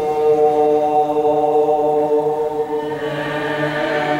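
Voices chanting an Eastern Christian liturgical hymn in long held notes over a lower sustained note. The sound brightens as a new phrase begins near the end.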